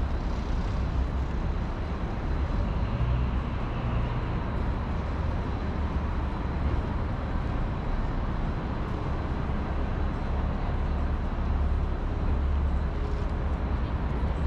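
Steady city traffic noise with a low rumble, unchanging throughout.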